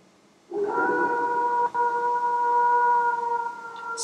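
One long wolf howl sound effect held on a steady pitch. It starts about half a second in, breaks briefly, and fades near the end.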